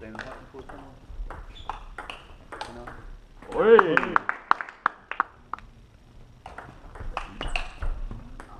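Table tennis ball clicking off bats and table in a rally, with sharp ticks coming a fraction of a second apart. A loud shouted voice cuts in about three and a half seconds in.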